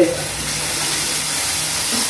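Beef steak and sliced onion frying in hot oil in a pan: a sudden loud sizzle as the food goes in, then a steady sizzle.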